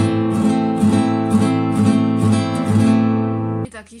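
Classical nylon-string guitar played as a fast rasgueado (fan strum), the fingers flicking across the strings one after another in quick repeated strokes, about four a second, on one held chord. The strumming stops abruptly near the end.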